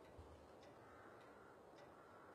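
Near silence with a clock ticking faintly: three light ticks, a little over half a second apart.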